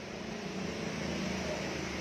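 Steady machine hum with a hiss, like a fan or small motor running, growing slightly louder.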